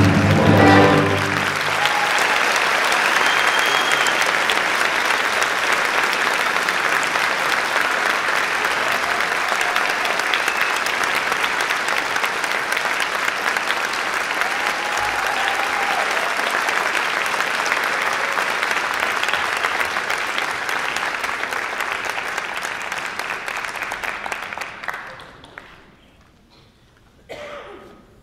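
An orchestra's closing chord ends about a second in, followed by an audience applauding steadily, fading out near the end.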